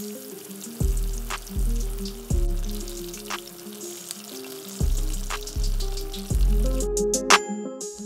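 Beer-battered fish frying in hot vegetable oil in a skillet: a steady sizzle, under background music with low notes that change about once a second. The sizzle cuts off about a second before the end.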